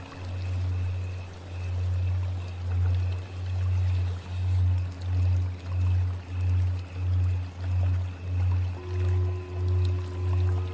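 Low humming drone tone that throbs in regular pulses, slowly at first and then faster, about one and a half pulses a second by the middle, over a steady rush like flowing water. Faint steady higher tones sit above it, and a new higher tone comes in near the end.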